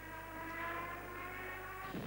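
A steady held tone with several overtones, keeping one pitch for nearly two seconds and stopping just before speech resumes.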